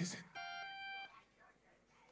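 A single steady electronic tone with a clean, evenly spaced set of overtones, held for under a second. It starts and stops abruptly about a third of a second in.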